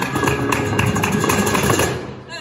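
Live flamenco: an acoustic guitar playing with a dense run of sharp percussive strikes from cajón, handclaps and the dancer's heels on a wooden board.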